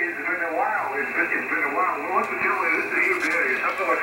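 Ham radio operator's voice received on a shortwave software-defined receiver and played through its speaker; the speech comes through thin and narrow, like a telephone.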